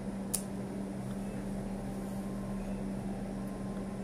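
Steady hum of a small room, a fan or air conditioner drone with a constant low tone, broken by a single sharp click near the start from the laptop being clicked to play a video.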